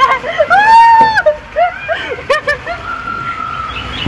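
Women shrieking and crying out while sliding down an enclosed water-slide tube: one long rising-and-falling shriek about a second in, then shorter cries, with water sloshing in the tube.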